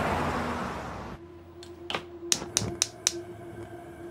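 A car drives past, its rush of road noise fading away during the first second. Then, over a steady low hum, a gas stove's igniter clicks about five times in quick succession.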